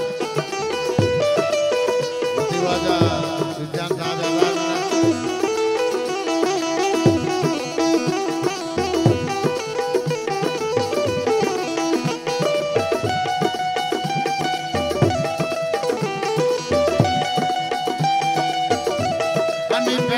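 Instrumental passage of Balochi folk music: harmonium melody over sustained notes, with a steady hand-drum rhythm.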